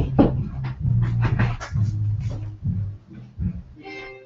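A large hardcover book being handled and moved close to the microphone: a run of rustling, scraping and bumping noises over a low rumble.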